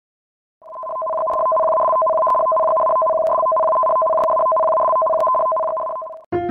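Electronic two-tone alert tone, a lower and a higher pitch held together, fading in about half a second in and sounding unbroken for over five seconds: the attention signal that heralds a tsunami warning.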